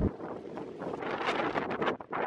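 Strong wind buffeting the microphone in uneven gusts.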